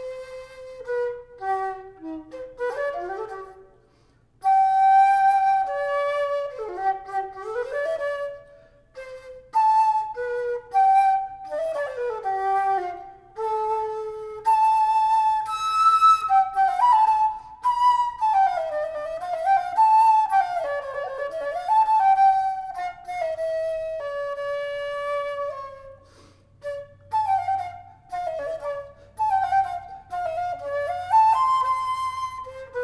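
A historical wooden-style transverse flute played solo: a single unaccompanied melodic line with quick runs and ornaments, breaking off briefly for breath about four seconds in and again near the end.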